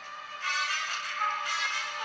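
Film score music: sustained chords that swell louder about half a second in, thin and tinny, with nothing in the low end, as heard through a computer speaker recorded off the screen.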